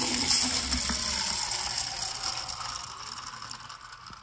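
Water pouring from a plastic container into a plastic cup. It starts suddenly and grows steadily quieter as the cup fills.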